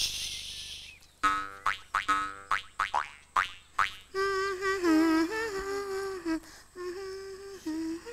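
A voice humming a tune with a wavering pitch, in two long held phrases in the second half, after a few short spoken syllables.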